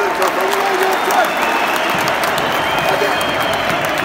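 Football stadium crowd applauding and shouting from the stands as a steady wash of noise, with single voices calling out close by near the start.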